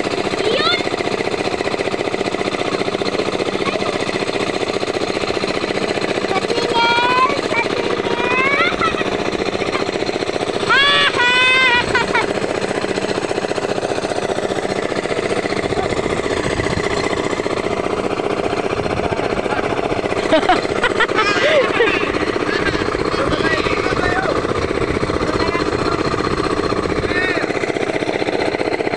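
A fishing boat's engine running steadily at a constant pace. People's voices call out over it several times, loudest about ten to twelve seconds in and again around twenty seconds.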